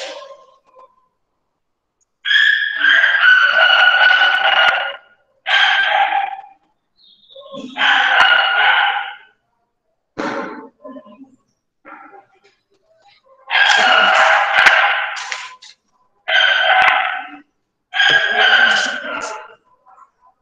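Six loud, drawn-out crowing calls, each one to two and a half seconds long, with short pauses between them.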